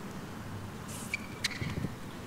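Tennis ball bounced on a hard court before a serve: two sharp knocks a little over a second in, over a steady low background hush.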